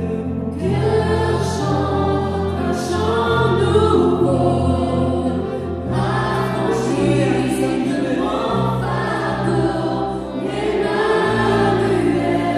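A worship band performing a song: several men and women singing together over keyboard accompaniment, with long held bass notes that change about halfway through and again near the end.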